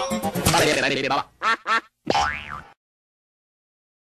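Cartoon production-logo audio with music and a jumble of cartoon sound effects. About a second and a half in come two short squeaks that rise and fall, then a sliding tone. It cuts off into silence well before the end.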